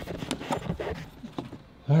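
Footsteps and light handling knocks on a deck: a few scattered short clicks in the first second or so, then quieter.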